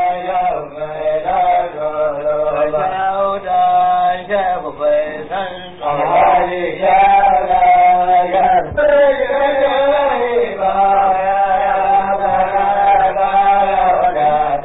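A man chants a Hausa praise song in long, held notes that bend up and down in pitch.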